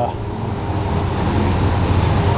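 Steady low drone of a car engine running at idle, with a wash of outdoor traffic noise.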